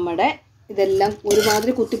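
A person talking while a metal spoon stirs soapy liquid in a steel pot, clinking and scraping against the pot.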